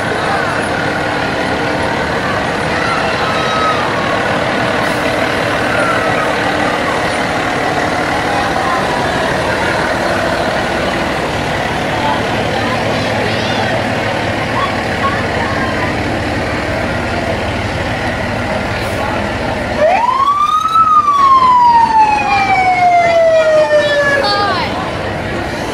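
A fire engine passing slowly, its engine running under crowd chatter. About twenty seconds in, its siren winds up quickly in one loud rising whoop and then slowly winds back down.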